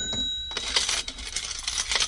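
A bright ringing chime that stops about half a second in, over a rapid clatter of metallic clinks like coins pouring, which thins out towards the end.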